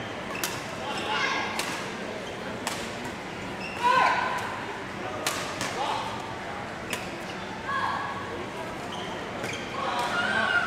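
Badminton rally: racket strings sharply smacking a shuttlecock about every second or two, in a large echoing hall, with voices in the background.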